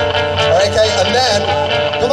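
Live rock band playing electric guitars and bass through a stage PA, a loud, steady musical backing with some wavering held notes.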